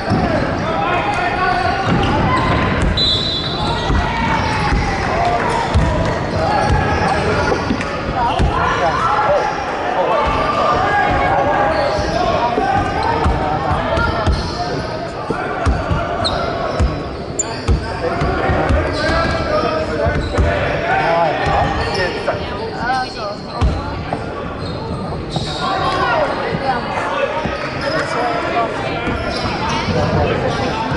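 A basketball bouncing at irregular intervals on a hardwood gym floor, under continuous overlapping voices of players and spectators in a large hall.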